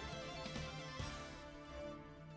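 Background music with a light beat, getting a little quieter near the end.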